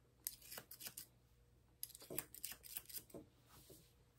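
Faint, quick snips of Ashley Craig Art Deco thinning shears closing through a springer spaniel's neck hair, in two short runs with a pause of about a second between them.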